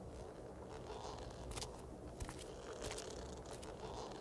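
Faint background ambience with a few soft, scattered clicks and rustles.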